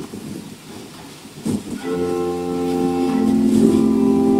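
Organ music: after a quieter pause, held organ chords begin about two seconds in and sustain.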